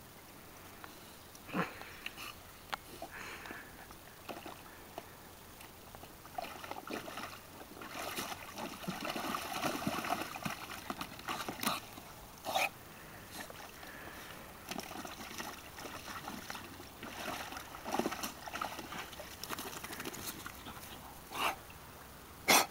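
Bulldog splashing and sloshing water in a plastic paddling pool, most busily around the middle, with a few short sharp noises scattered through.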